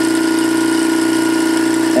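Dynex dual-head diaphragm vacuum pump running steadily with an even hum, working normally.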